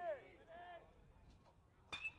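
Quiet ballpark ambience, then near the end a single sharp ping of a metal baseball bat hitting a pitched ball, ringing briefly.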